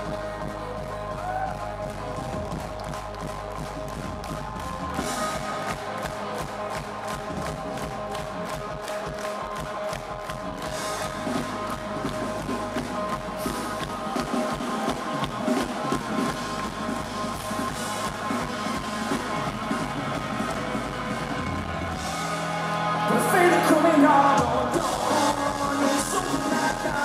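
Live indie rock band playing a mostly instrumental stretch, with held chords over a steady beat, heard from within the audience. It swells louder near the end.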